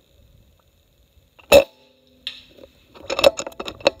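A Umarex Gauntlet PCP air rifle fires once, a single sharp crack about one and a half seconds in, with a fainter knock under a second later. Near the end come a quick run of clicks and rattles from the rifle being handled.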